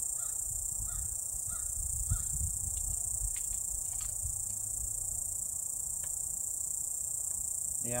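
Steady high-pitched drone of insects singing in the trees, over a low rumble. A few light knocks come about three to four seconds in as the wooden trap frame is handled.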